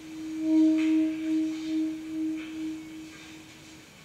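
A single sustained musical note, nearly pure with faint overtones, swelling in over the first half-second and then fading with a slow, even wobble in loudness until it dies away near the end.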